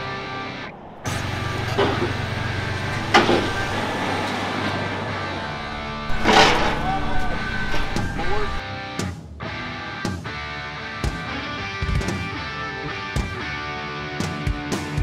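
Background music with a steady instrumental bed, over faint voices and a few knocks.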